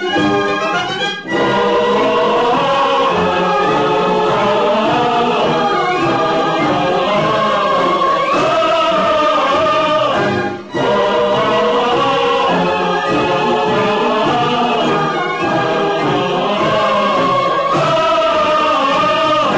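Choir singing over orchestral accompaniment; the music drops out briefly about a second in and again near eleven seconds.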